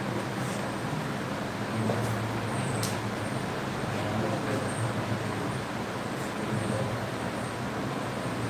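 Steady low background rumble with a faint hum and hiss, and a small tick about three seconds in.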